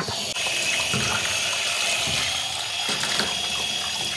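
Water running steadily from a sink tap over a paint sprayer part held under the stream, splashing into a stainless steel sink as the paint is rinsed out.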